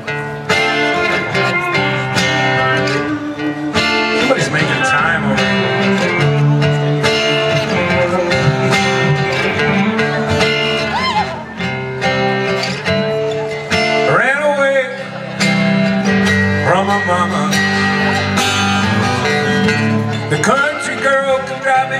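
Live country band playing an instrumental break: several acoustic guitars strumming chords under a lead guitar line with a few rising, sliding notes, over a steady beat.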